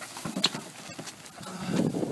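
Plastic grocery bags rustling and knocking as a man hoists a whole load of them at once, with a rough straining grunt building near the end.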